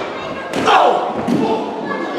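A thud about half a second in as a wrestler's body hits the ring canvas, followed by a shout, in a reverberant hall.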